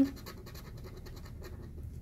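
A plastic scratcher tool scraping the silver coating off a scratch-off lottery ticket, in a quick, even run of short scraping strokes.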